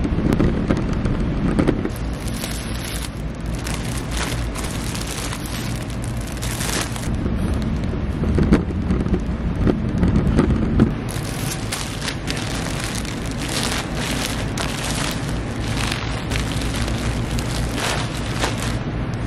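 A steady rumble from a rolling cart's wheels on a concrete floor, with many short crackles of plastic packaging over it.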